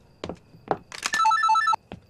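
Mobile phone ringing, a short burst of a ring that warbles between two pitches, starting about a second in and cutting off suddenly as the call is picked up. A few light knocks come before it.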